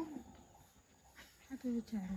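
Near quiet for over a second, then a person's voice, in short pitched sounds starting about one and a half seconds in.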